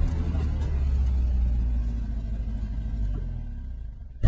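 A deep, steady low rumble that slowly fades away.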